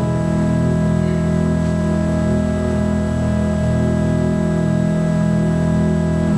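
Church organ holding a steady sustained chord, the closing chord of a piece, after a chord change right at the start.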